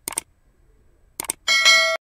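Sound effects for an animated subscribe button: a quick double mouse click, another double click a little over a second later, then a bell chime that rings for about half a second.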